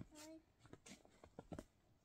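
Mostly quiet: a child's voice says a short "No", followed by a few faint, brief clicks.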